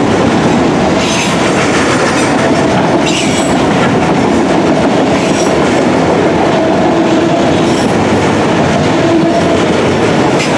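Freight train of autorack cars rolling past at close range: a steady, loud rumble of steel wheels on the rails, with faint high wheel squeals coming and going.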